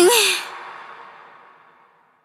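End of a pop song: the female lead vocal's last note slides down in pitch like a sigh as the band stops, then the echo fades away to silence.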